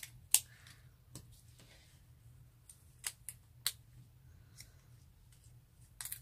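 A few small, sharp clicks and taps of gems being picked off their strip and pressed onto a paper card: two at the start, one about a second in and three together about three seconds in.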